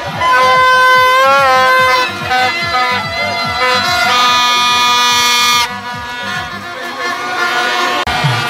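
Plastic toy trumpet horns blown in long, loud blasts. The first wavers in pitch about a second in, and a second, higher blast runs from about four seconds to nearly six. A fast, steady beat runs underneath.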